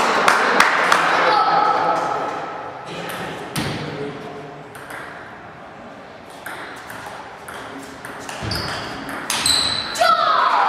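Table tennis ball clicking on the table and bats: a few sharp clicks in the first second, then only scattered ones, over voices in the hall.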